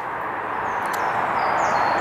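Steady rushing outdoor noise that grows slowly louder, with faint high bird chirps above it.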